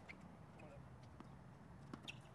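A tennis racket strikes a ball once with a sharp pop at the start, followed by near silence with a few faint ticks and a small knock near the end.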